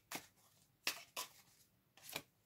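Tarot deck being shuffled by hand: three short card strokes, the last two close together.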